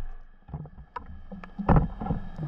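Water sounds with a low rumble, scattered sharp clicks and knocks, and one dull thump a little before the end.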